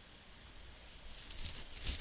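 Near silence, then from about a second in a short run of faint, hissy rustling or crackling noises.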